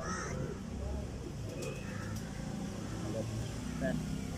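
Harsh, caw-like bird calls: one right at the start and fainter ones about two seconds in, over a steady low background rumble.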